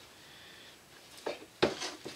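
Hands handling a roll of double-sided tape against a cardboard album cover: mostly quiet, then a short sound, a sharp click and a brief rustle in the second half.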